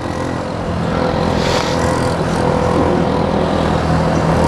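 Small single-cylinder Yamaha 150 motorcycle engine running steadily under way, picking up a little about a second in, with road and wind noise.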